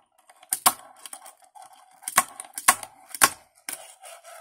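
A fingerboard doing ollies on a wooden table: about five sharp clacks as the tail pops and the board lands, with the small wheels rolling on the tabletop in between.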